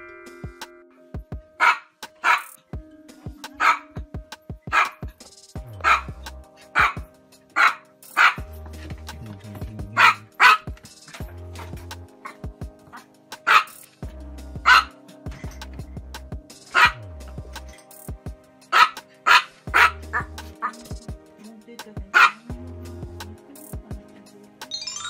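A small Chihuahua yapping: many short, high-pitched barks, often in quick pairs with short gaps between, over background music with a steady bass beat.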